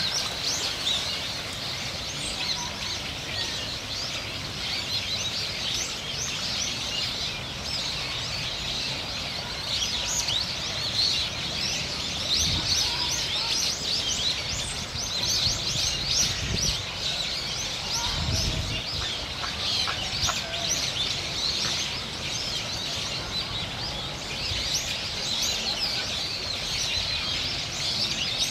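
A dense, unbroken chorus of many birds chirping and calling, high-pitched and overlapping, with a few faint low thumps in the middle.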